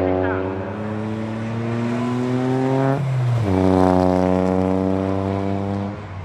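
Toyota GR Yaris's turbocharged 1.6-litre three-cylinder engine accelerating on track, its pitch climbing steadily, dropping sharply with an upshift about three seconds in, then climbing again.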